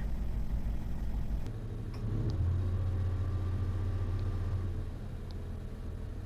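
Low engine-like rumble. A steady low hum comes in about two seconds in and fades out near the end, with a few faint ticks.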